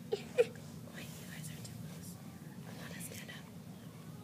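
Children whispering over a steady low room hum, with two short high vocal sounds from a child in the first half-second.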